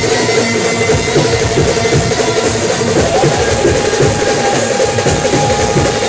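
Indian street brass band playing: trumpets and a large brass horn over a steady, driving drum beat, with a long held horn note coming in about halfway through.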